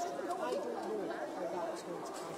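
Several people talking at once: indistinct, overlapping chatter.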